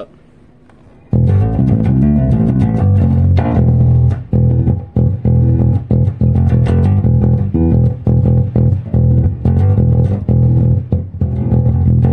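PRS SE Kingfisher electric bass played fingerstyle on its neck pickup alone: a steady riff of quick plucked notes, starting about a second in.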